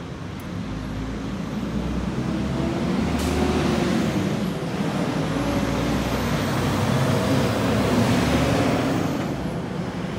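Street traffic: a motor vehicle drives past, its engine and road noise swelling from about two seconds in and easing off near the end.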